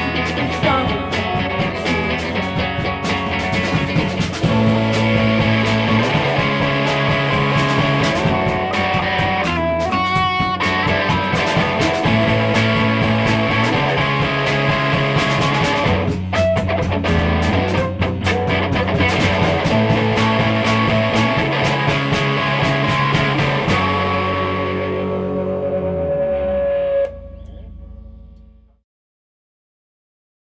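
Post-punk rock band playing an instrumental passage, with a Fender Jaguar electric guitar over a bass line that changes note every couple of seconds and drums, in a lo-fi rehearsal-room recording. The band stops together about 27 seconds in, leaving a note ringing that fades to silence within two seconds.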